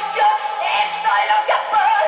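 A woman singing a Spanish-language pop song live into a microphone over band accompaniment, holding notes with a wavering vibrato.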